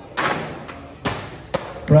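Skateboard impacts on concrete: a loud thud about a quarter second in that trails off over half a second, a second thud about a second in, and a sharp click shortly after. A commentator's voice comes in at the very end.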